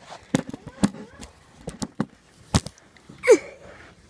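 Handling knocks and bumps from a phone being set down and someone shifting about in a cramped space, about five sharp separate knocks. A little over three seconds in there is a short grunt that falls in pitch.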